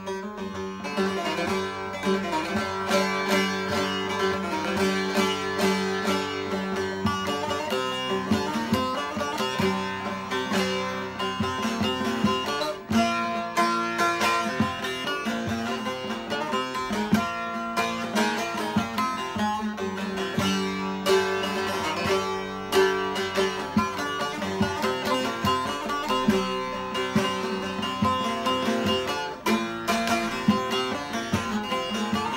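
Long-neck bağlama (uzun sap saz) with a mahogany body, played solo with a plectrum in a continuous run of strokes, its open strings ringing a steady drone under the melody. The maker calls its tone very soft and pleasant.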